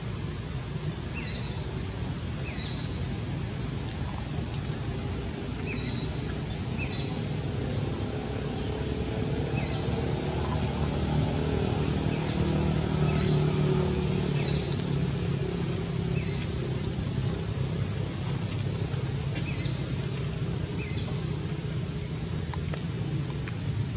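A bird calling with short, sharply falling chirps, singly or in pairs every one to three seconds, over a steady low rumble that swells from about ten to fifteen seconds in.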